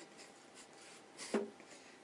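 Faint rustling and handling noise as people shift and grab at each other, with one short loud burst of noise a little past halfway through.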